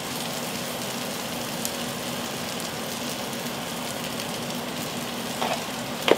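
Halved Brussels sprouts sizzling steadily in bacon fat and butter in a nonstick skillet.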